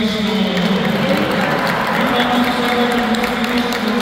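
Congregation applauding steadily, with voices singing held notes over the clapping.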